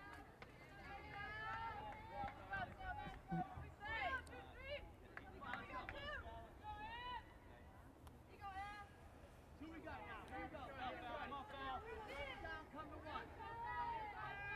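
Faint voices of players and spectators calling out and chatting at a distance, off and on, with a brief lull a little past the middle.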